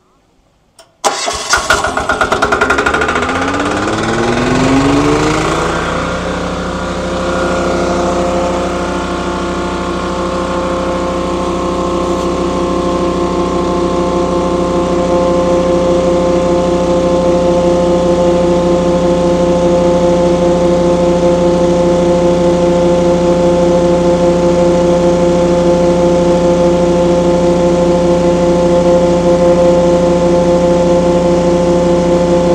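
A Yanmar diesel engine on a wet vac tanker is cranked on its electric starter about a second in and catches. It runs up in pitch over the next few seconds to full throttle, then runs steadily while driving a Mec 2000 vacuum pump on suction.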